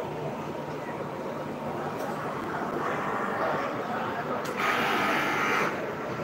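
Electric sewing machine in a workroom, with a steady mechanical hum, then a louder run of the machine lasting about a second shortly before the end.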